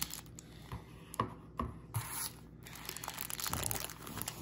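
Scissors cutting open the cellophane wrapper of a trading-card rack pack: a few sharp snips in the first two seconds, then a brief crinkle of the plastic.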